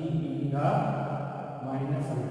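A man's voice speaking continuously in long, drawn-out syllables.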